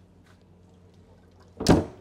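Fibreglass stern locker door on a motor yacht pushed shut by hand, closing with one loud thud near the end.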